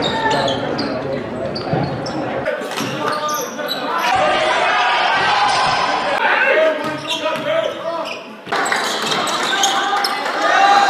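Game sound from a basketball court in a large gym: a ball dribbling on the hardwood floor amid indistinct voices of players and spectators.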